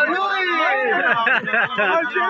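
Speech only: a man talking loudly in a raised voice, his pitch rising and falling.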